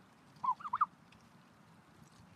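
Canada goose giving a quick run of three or four short honks about half a second in.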